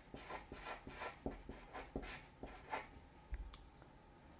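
Sharpie permanent marker writing on paper: a faint run of short, quick strokes that thins out near the end.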